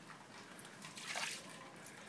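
Water poured from a plastic cup splashing onto a wet concrete balcony deck, rinsing a patch treated with cleaner. The faint splash swells about a second in.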